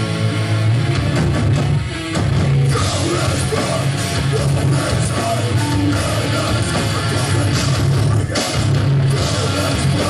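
Hardcore punk band playing live: distorted electric guitars, bass and drums, with the vocalist shouting into the microphone. The music stops for a moment about two seconds in, then comes back in full.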